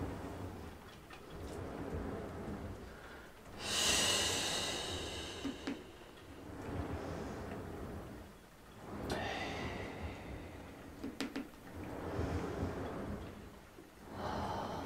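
A woman breathing deeply and audibly through the mouth in a slow rhythm, with hissing exhales as she presses the Pilates reformer carriage out. The strongest exhale comes a few seconds in, and further ones follow near the middle and end.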